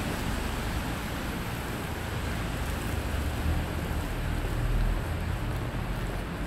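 Steady low rumble with hiss: the ambient noise of a parking garage picked up by a handheld phone, swelling slightly a little before the end.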